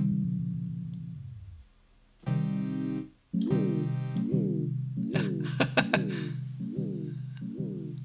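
Software modular synth patch, an oscillator through a filter into a delay, playing low notes while the delay time knob is being turned, so the echoes bend in pitch. The first note's tail slides down in pitch, and from about three seconds in the echoes repeat about twice a second, each swooping downward.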